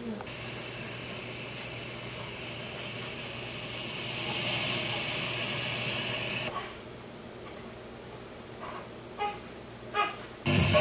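Bose Wave Radio/CD (AWRC1G) speaker giving out FM inter-station static, a steady hiss with a low hum under it, as the tuner is stepped between stations. The hiss grows louder for a couple of seconds, then drops back, and two brief blips come near the end.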